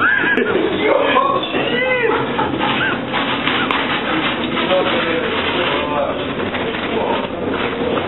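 Steady rushing roar of storm wind and sea spray as heavy waves break over a container ship's bow, with several short, rising-and-falling exclamations from onlookers over it.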